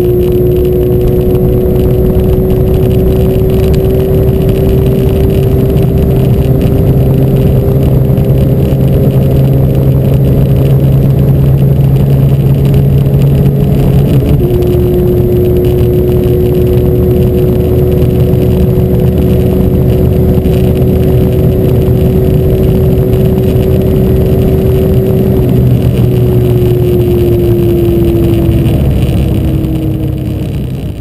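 Porsche 997 GT3's naturally aspirated flat-six engine at high revs in top gear, heard from inside the cabin with road and wind noise, its pitch climbing slowly as the car accelerates past 250 km/h toward about 300 km/h. Near the end the engine note falls away.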